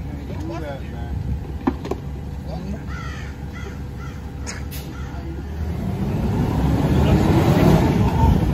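Rear-loader garbage truck's diesel engine idling, then revving up and rising in pitch as the truck pulls away, loudest near the end. A crow caws several times in the first half.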